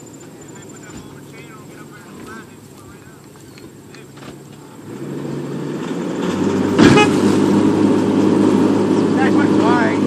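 A pickup truck's engine revs up about five seconds in and holds under heavy load as it tows a sunken car out of a pond on a chain. A short, sharp loud sound comes about seven seconds in. A steady high insect trill runs through the quieter first half.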